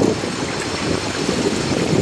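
Swimming-pool water lapping and sloshing against the edge: a steady rush with no pauses.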